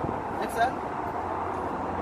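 A man's short spoken command to a dog, "sit", about half a second in, over a steady outdoor background hum.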